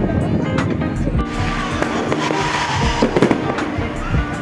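Fireworks going off: a dense crackling hiss that starts about a second in, with a cluster of sharper pops about three seconds in.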